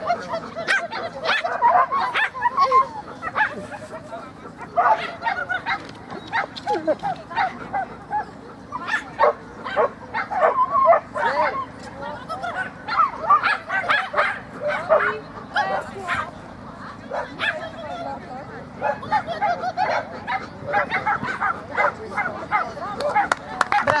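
Small dog barking and yipping over and over in quick, excited bursts while running an agility course, mixed with a handler's short called commands.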